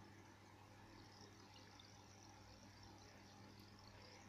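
Near silence: a faint steady low hum under a light hiss.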